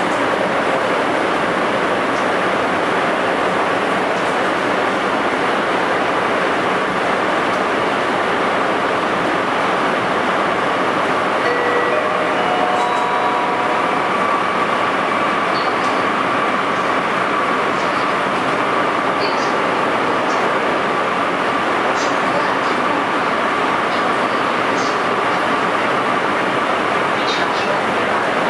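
Interior of a KORAIL Airport Railroad train car running at speed: a steady rushing rumble of wheels and car body. About halfway in comes a short run of stepped tones, then a steady high whine, with faint scattered clicks later on.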